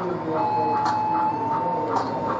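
Small motor-driven mechanism running, likely the drive of the animated woodcutter figure: a thin steady whine that comes in about half a second in, with a regular tick about two and a half times a second, over the chatter of voices in the hall.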